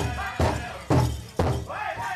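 Powwow drum struck in a steady beat, about two strikes a second, under group singing; the drum drops out for a moment near the end while the voices carry on.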